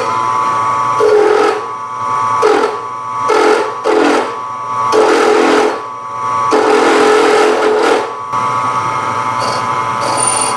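Milling machine spindle running with a steady whine while a 1-1/8 inch drill bit cuts into an aluminum drive rail. The cutting comes in about six separate bursts, the last and longest lasting nearly two seconds near the end, as the bit is fed down and eased off in pecks to break the chip.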